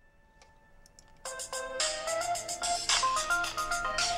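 Mobile phone ringing with a melodic ringtone: a quick tune of stepping notes that starts about a second in.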